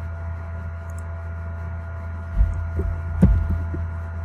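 Steady low electrical hum with a faint high steady tone above it. A few low thumps and one sharp click come about two and a half to three and a half seconds in.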